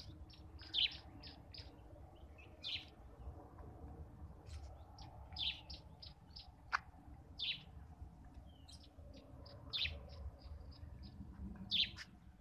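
Birds chirping in short, high calls, often in quick runs of three or four, over a low rumble.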